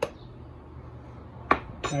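A metal spoon finishes scraping through dry flour and salt in a mixing bowl. After a quiet stretch, two sharp clinks of the spoon come about a second and a half in, close together.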